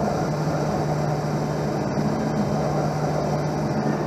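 Optical lens edger running as its bevel wheel cuts a polycarbonate prescription lens, with water spraying onto the lens to wash away debris in the final seconds of the cut. A steady, even noise over a constant low hum.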